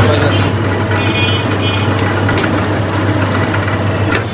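An engine running steadily with a low, even hum, amid busy street noise.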